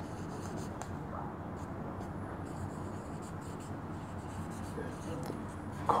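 Felt-tip marker writing on a whiteboard: faint short scratches and squeaks of the pen strokes over a steady background hiss.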